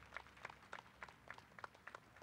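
Faint, scattered hand-clapping from a small audience: irregular, sparse claps rather than full applause.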